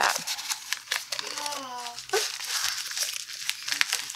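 Paper rustling and crinkling: kraft-paper backing cards and packaging paper being handled, with many small crisp crackles. A brief voice sound cuts in about a second and a half in.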